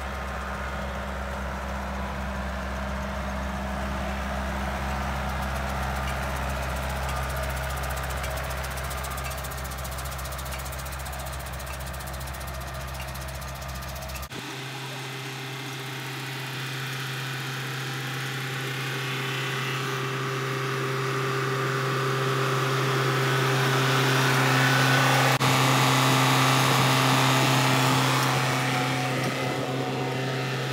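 Farm tractor engine running steadily as the tractor drives across the field with a fertilizer broadcaster mounted behind. The deep low rumble drops out abruptly about halfway through, and the engine grows louder in the last third as the tractor comes close.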